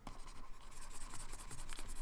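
Faint, steady scratching of a pen stylus moving over a graphics tablet, with a few light ticks, as brush strokes are painted in.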